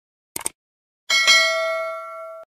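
A mouse-click sound effect, then about a second in a single bell ding that rings on several clear steady tones and slowly fades. These are the sounds of a subscribe-button animation: the click on Subscribe and the notification bell.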